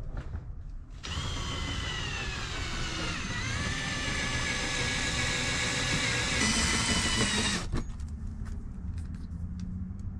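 Cordless drill drilling out a rivet in an Airstream's aluminium interior skin. One continuous run of a little over six seconds: the motor whine drops in pitch a couple of seconds in as the bit bites, then holds steady until the drill stops. Light clicks come before and after the run.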